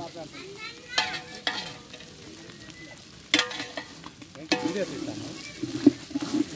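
A metal spatula stirring goat tripe and intestines (boti) frying in a large metal pot. It scrapes and knocks against the pot several times, each knock ringing briefly, over a faint sizzle.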